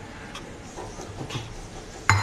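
Steady background noise with a few faint soft clicks as hands shape dough balls and handle a ceramic plate.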